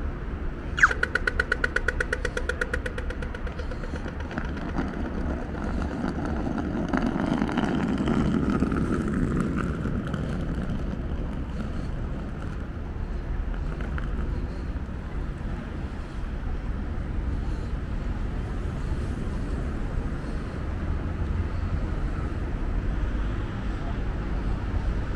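Australian audio-tactile pedestrian crossing signal giving the walk cue: a sharp electronic beep about a second in, then rapid ticking at about ten a second that fades after a couple of seconds. Steady city street traffic follows, swelling as vehicles pass.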